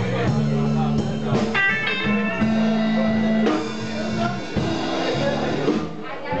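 Live blues band playing: electric guitar and harmonica over drums, with held and bent harmonica notes.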